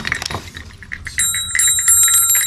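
Small silver-plated hand bell with a figural handle being shaken, starting about a second in: quick repeated clapper strikes over a bright, high, sustained ring.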